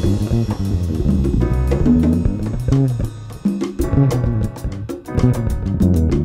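Jazz trio music: the bass plays a moving line of notes while the drum kit keeps time on the cymbals, with a brief drop in loudness about halfway through.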